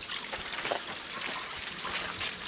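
Steady background hiss with a few faint, soft knocks and no distinct event.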